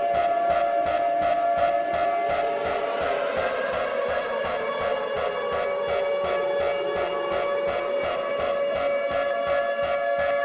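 An alarm siren wailing over electronic music with a steady beat, its pitch sinking slowly in the middle.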